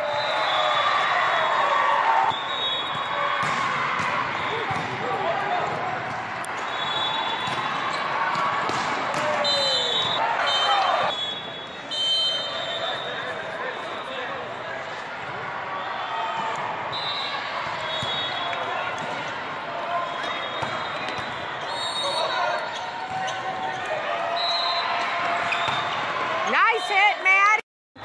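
Busy indoor volleyball hall: many voices chattering and calling across the courts, short high sneaker squeaks on the sport-court floor, and volleyballs being hit and bouncing, all echoing in the large hall. The sound cuts out briefly near the end.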